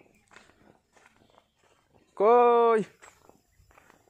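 Footsteps on dry, crumbly farm soil. About two seconds in, a loud voice gives a single held call lasting just over half a second; its pitch stays level and drops at the very end.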